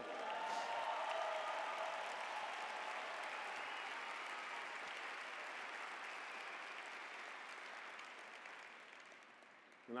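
Large audience applauding, loudest at the start and gradually dying away near the end.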